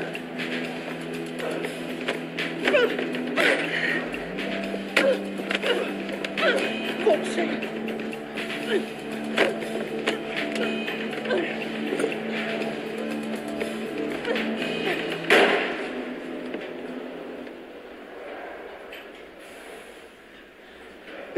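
Film score of long held low notes under a violent struggle, with scuffling, knocks and short strained vocal efforts. There is one loud hit about fifteen seconds in, and then the music stops and the sound thins out.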